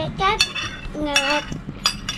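Metal spoon clinking and scraping against a ceramic bowl, with a few sharp clinks, mixed with short bits of a child's voice.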